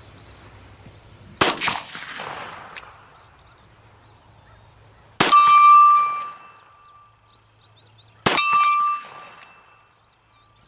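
Three .44 Magnum revolver shots fired single action from a Ruger Redhawk, about three to four seconds apart. After the second and third shots a hanging metal target rings with a clear tone that fades over about a second. The first shot has no ring.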